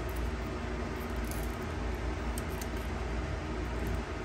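Steady low background hum, with a few faint brief crinkles as the paper backing is peeled off small clear acrylic pieces.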